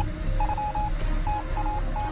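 Intro sting of a news show: a single-pitched electronic beep tapping out quick short and longer pulses, Morse-code style, over a low rumbling music bed.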